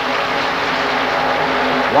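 Steady, even drone of a field of NASCAR Winston Cup stock cars running at speed on a superspeedway, their restrictor-plated V8 engines blended into one sound.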